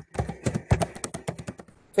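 A quick run of computer keyboard keystrokes, many clicks a second, heard through a video-call microphone.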